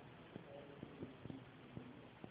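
Near silence: steady hiss with scattered soft clicks and a few faint snatches of a distant voice.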